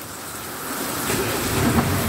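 A steady rushing noise with a low rumble under it, building about half a second in, as the Mercedes-Benz Sprinter 519 is switched on at its start button.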